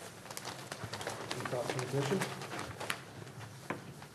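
Low, indistinct talk from people in a meeting room, with scattered small clicks and rustles.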